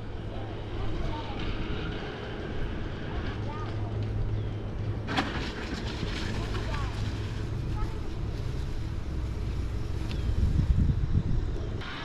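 Outdoor ambience: a steady low hum with faint distant voices and a few faint chirps, and one sharp click about five seconds in.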